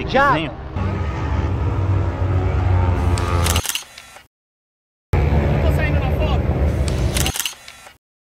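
Camera shutter clicks, twice, about four seconds apart, each closing a few seconds of background voices and outdoor noise. After each click the sound cuts to a short spell of dead silence.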